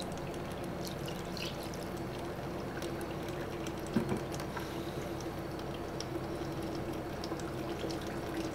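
Liquid pouring and trickling through a cloth filter into a plastic backpack sprayer tank. It drains slowly because fish emulsion in the mix is clogging the cloth. There is one short knock about halfway through.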